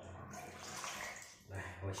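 Water sloshing and splashing in a stainless-steel basin as a peeled lotus root is handled in it, a soft wet noise for about a second and a half before a man's voice comes in.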